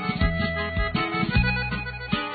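Norteño band playing an instrumental passage between sung verses: a button accordion carries the melody over a bajo sexto, an electric bass and drums keeping a steady beat.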